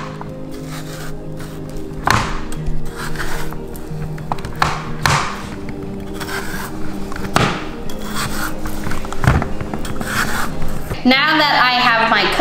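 A large chef's knife scoring halved butternut squash on a baking sheet: several separate knocks and cuts of the blade, irregularly spaced, over steady background music.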